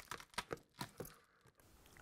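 Cured epoxy resin inside a clear plastic feed-line tube cracking as the tube is flexed by hand: a few faint, sharp cracks in the first second. Cracking cleanly like this is a sign that the resin has cured enough for demoulding.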